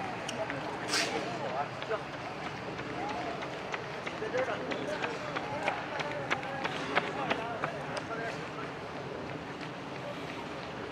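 Footsteps on a paved path, a run of light clicks, with faint voices of people talking in the background and a sharper click about a second in.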